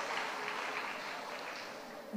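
The tail of a congregation's applause: a faint, even patter of clapping that fades away.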